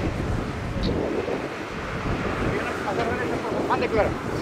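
Wind blowing across the microphone in a steady rush, with faint voices in the background.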